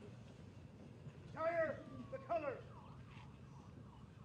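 Shouted military drill commands from a color guard: two drawn-out calls close together, starting about a second and a half in, with fainter calls after.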